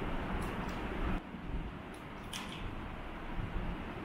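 Steady background room noise with a few faint clicks from handling a plastic bottle and a rubber balloon.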